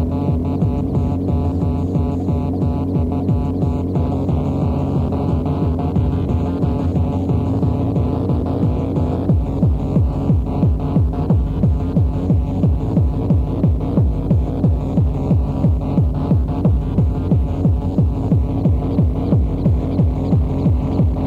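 Hardtek free-party tekno track: a dense, low, humming synth line over a driving electronic beat. About nine seconds in, a heavier regular pulse of about two a second comes to the fore.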